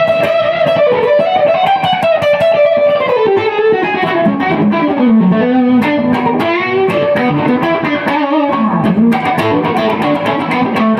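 1967 Gibson ES-335 semi-hollow electric guitar played through a 1965 Fender Deluxe Reverb amp: a busy, continuous lead line of picked single notes, with quick runs that fall in pitch a few times.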